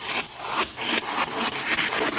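Chef's knife slicing through a sheet of parchment paper laid on a wooden cutting board: a continuous rasping scrape with a few brief dips.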